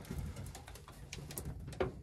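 Faint scattered clicks and light rubbing from an insulated battery cable being handled and pulled away from the steel roll-cage tubing.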